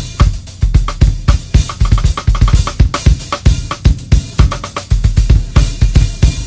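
DW Performance Series drum kit with Zildjian K Custom cymbals played in a fast solo: rapid, dense strokes on bass drum, snare and toms under a steady cymbal wash.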